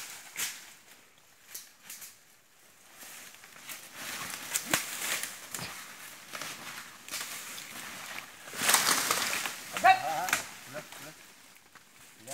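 Dry brush and bamboo crackling and rustling as a working elephant pushes through the undergrowth, with scattered snaps and a longer rush of rustling near the end. A brief human call follows just after.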